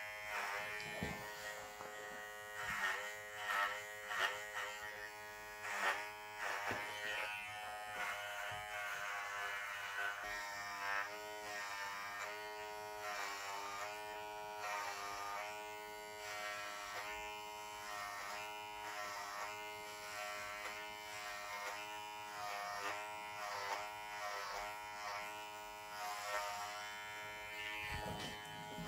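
Cordless electric hair clippers buzzing steadily, with a slight waver in pitch, as they cut through long wet hair. A few short sharp clicks sound in the first several seconds.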